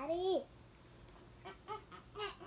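A young child's high-pitched, wordless playful voice: one sliding call that rises and falls and stops about half a second in, then a few short, soft voice sounds near the end.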